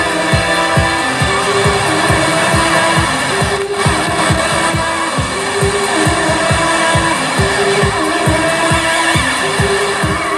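Live electronic music played on synthesizers and a controller: a fast, steady kick drum, about three beats a second, under a repeating synth line that steps between a few held notes.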